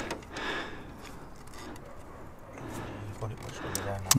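Quiet hand-working under the bonnet: faint rustling and a few small clicks in the second half as the engine's high-pressure fuel pump is handled and worked loose.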